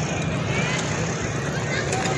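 Honda motorcycle's engine running steadily as it rides along a street, with road and traffic noise around it.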